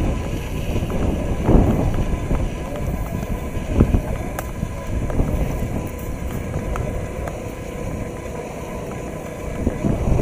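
Wind rumbling and buffeting on the microphone, with the indistinct chatter of people close by.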